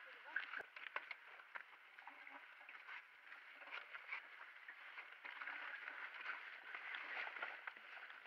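Mountain bike riding along a dirt forest trail: a steady hiss of tyres over dirt and leaves, with scattered clicks and rattles from the bike as it goes over roots.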